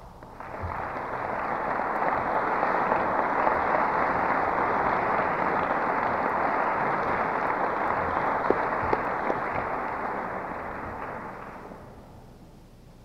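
Audience applauding, swelling over the first couple of seconds and dying away near the end.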